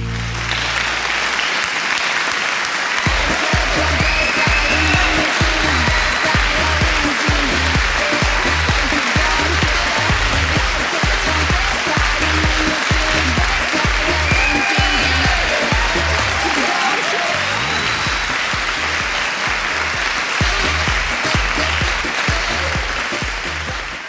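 Audience applauding a finished dance performance. From about three seconds in, music with a steady bass beat plays under the applause; the beat drops out briefly about two-thirds of the way through, then returns.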